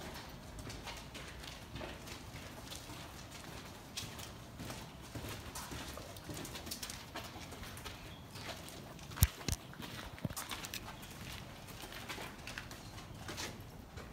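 Footsteps on a gritty, debris-littered concrete and tile floor: irregular scuffs and light clicks, with one sharp, louder click about nine seconds in.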